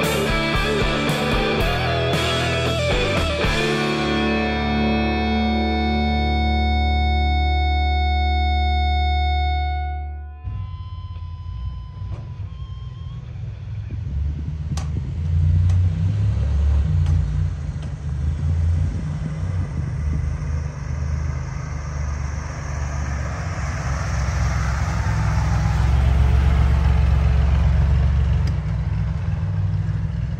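Guitar rock music plays and ends on a held chord that fades out about ten seconds in. Then a Willys CJ2A Jeep's engine runs as it drives up a sandy wash, with wind noise, getting louder twice.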